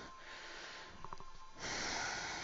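A person's breathing close to the microphone during a yoga flow: a faint hiss, then a louder hissing breath starting about a second and a half in.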